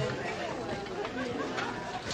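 Quiet murmur of several overlapping voices, with no single clear speaker.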